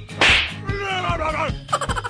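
A sharp whip-crack-like hit about a quarter second in, then a pitched sound falling in pitch over about a second, laid over background music with a steady beat; another short pitched sound comes in near the end.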